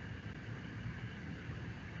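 Faint, steady background hiss and room tone picked up by an open video-call microphone.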